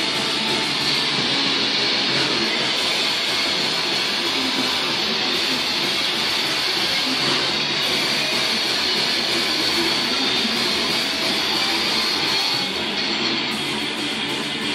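Metal band playing live, distorted electric guitar in a dense, unbroken wall of sound. It has the thin, harsh quality of a phone recording that has been cleaned up.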